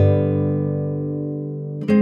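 Relaxing instrumental music: guitar chords struck and left to ring. One chord rings and fades slowly, and a new one is struck near the end.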